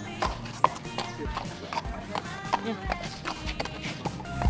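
A horse's hooves clopping on paved ground as it is led at a walk, a string of irregular knocks, with faint background music underneath.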